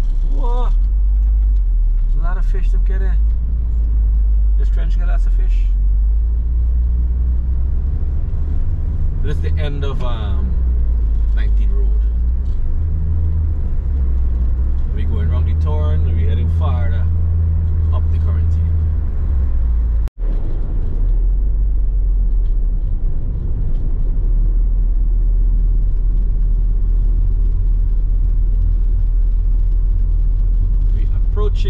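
Steady low road and engine rumble inside a moving car's cabin, with muffled voices now and then in the first two-thirds. The sound drops out for an instant about two-thirds of the way through.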